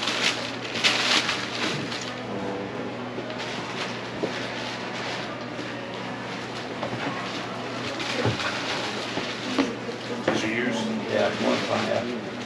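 Tissue paper and a cardboard shoebox rustling as a sneaker is pulled out, loudest in the first second or so, then a few light clicks of handling over a steady low hum and quiet background voices.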